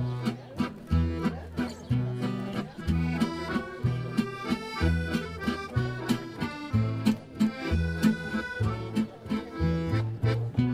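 Unplugged gypsy-swing trio: the accordion plays the melody over acoustic guitar chords and plucked double bass, with a steady swing beat.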